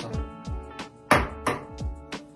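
Background music with a steady beat, and one sharp knock about a second in.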